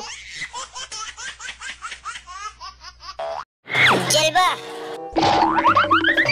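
Cartoon comedy sound effects over background music: a run of quick chirping laugh-like sounds, a brief cut to silence about three and a half seconds in, then loud springy boings sliding up and down in pitch.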